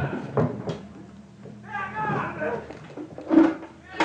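Men's voices speaking and exclaiming on set, unclear to the recogniser, with a loud outburst about three and a half seconds in. A couple of sharp knocks come about half a second in.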